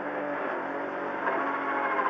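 Ford Fiesta R2T rally car's turbocharged three-cylinder engine heard from inside the cabin as the car pulls away from a standstill, its sound steady at first and then climbing and growing louder about a second in.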